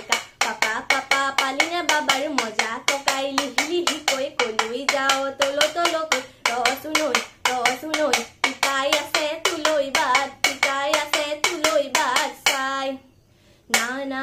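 A toka, the split-bamboo clapper of Bihu music, struck in a fast, even beat of sharp clacks under a young woman's solo singing. Both break off briefly about a second before the end, then resume.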